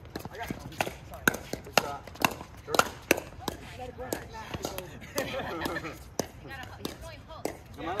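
Pickleball rally: sharp hollow pops of paddles striking a plastic pickleball, and the ball bouncing on the hard court. They come quickly, about two a second, in the first three seconds, then thin out.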